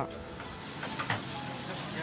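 Sausages sizzling steadily on a hot flat griddle.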